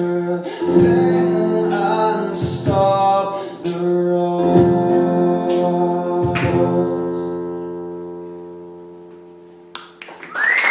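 Closing bars of a live acoustic folk song: guitar chords strummed under a man's sustained singing. A last chord, struck about six seconds in, rings and fades away.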